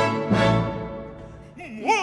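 Opera orchestra playing a full chord that fades over about a second, then a male opera singer's voice enters near the end with a wide vibrato, sliding upward.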